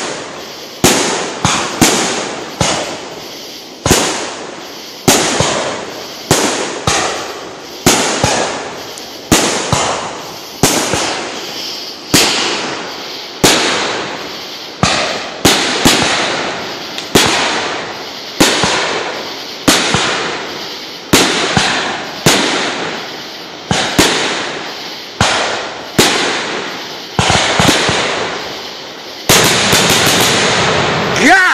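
Aerial firework shells bursting one after another, about one sharp bang a second, each echoing away. Near the end the bangs come thicker and run together into a steadier noise.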